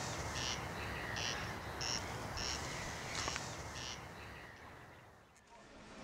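Outdoor evening ambience: a steady low hum with a small creature's short chirp repeated about twice a second, all fading away about five seconds in.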